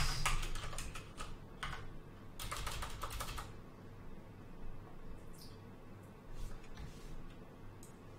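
Typing on a computer keyboard: a run of quick keystrokes in the first few seconds, then a few scattered clicks.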